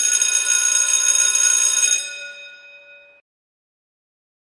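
End-screen sound effect: a loud electronic ringing tone of several pitches at once that starts suddenly, holds for about two seconds, then fades out about three seconds in.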